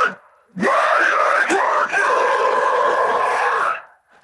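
Isolated deathcore harsh vocal: after a brief gap about half a second in, one long screamed note that settles into a steady hold for its last second and a half, then cuts off just before the end.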